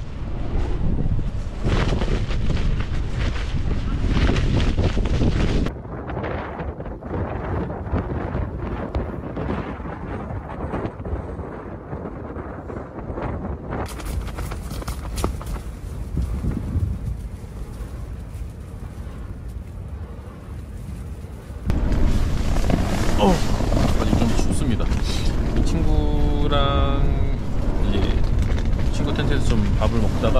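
Strong gusting wind buffeting the microphone, a low rumbling noise that drops in level for a stretch in the middle and comes back loud about two-thirds of the way through. A person's voice is heard briefly near the end.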